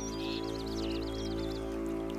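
Background score of a sustained, held low chord. Over it, in about the first second, comes a quick high twittering trill like a small bird's.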